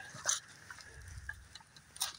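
Faint rustling and a few light clicks from dry brush and fallen leaves being moved, with one sharper click shortly after the start.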